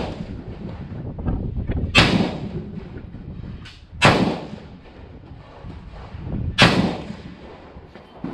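Bushmaster AR-15-style rifle in 5.56 mm firing three single shots a couple of seconds apart, each with a short echo.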